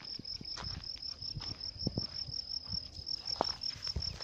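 A cricket chirping: a steady run of evenly spaced high, short pulses, with a few scattered soft crackles beneath it.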